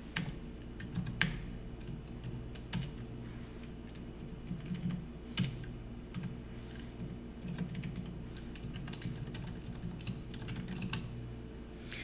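Typing on a computer keyboard: irregular keystrokes with a few louder key clicks, over a low steady hum.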